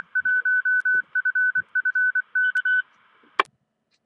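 Amateur radio repeater on the 220 MHz band sending its Morse code identification: a single steady beep keyed on and off in dots and dashes for nearly three seconds. It ends with a short burst of squelch noise as the repeater drops its carrier.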